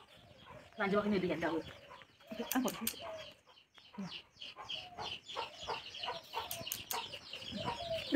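Chickens clucking in a series of short calls, with a louder burst about a second in.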